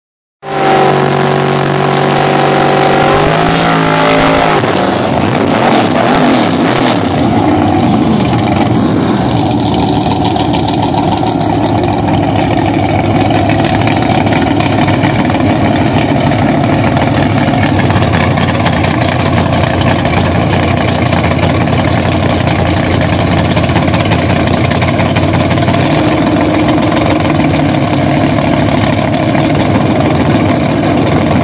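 Drag race car engines running loud at the start line. The roadster's engine holds steady, then revs up and breaks into a ragged roar between about 3 and 7 seconds in, with tyre smoke from a burnout. After that the engines run on at a loud, rough idle while staging, with a change in tone near the end.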